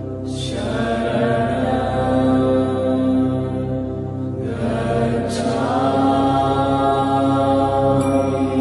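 Background music: a chanted mantra over a steady held drone, with a new sung phrase starting about half a second in and another about four and a half seconds in.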